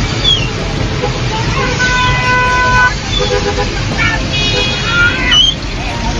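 A vehicle horn sounds for about a second, about two seconds in, and again briefly after four seconds, over raised, shouting voices of a crowd and a low engine rumble.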